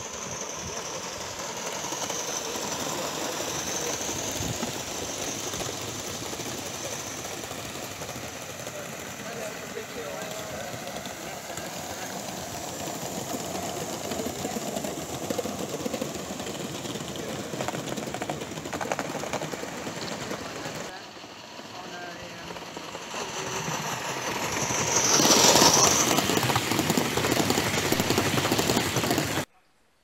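Gauge 1 model trains running on garden track: steady rolling clatter of wheels on the rails, loudest as a train passes close about 25 seconds in, then cut off suddenly just before the end.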